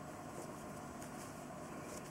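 Faint, steady room hiss, with a few soft rustles of yarn being drawn through stitches on a crochet hook about half a second and a second in.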